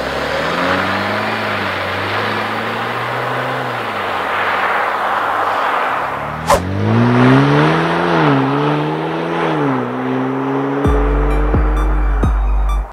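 Jeep Wrangler driving away under acceleration, first on its stock exhaust and then, after a sudden click about six and a half seconds in, on a Flowmaster FlowFX aftermarket exhaust. On the second run the engine note climbs in pitch, dips twice as it shifts gear, then climbs steadily. A low hum comes in near the end.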